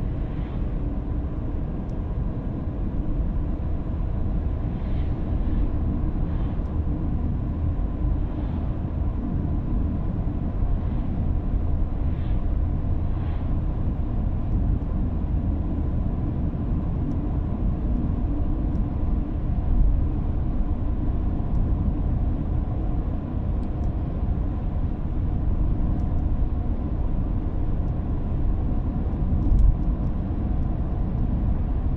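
Steady road noise inside a moving car: engine and tyres rumbling low at cruising speed on the road. There are two brief louder thumps, one about two-thirds of the way through and one near the end.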